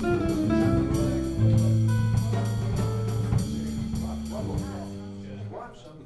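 Small jazz group playing: archtop guitar, digital piano, bass and drums with steady cymbal strokes. The playing thins out and fades about five seconds in.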